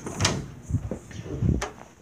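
A cupboard door being opened and handled, with several knocks and clunks. The strongest come about a quarter of a second in and about a second and a half in, followed by a sharp click.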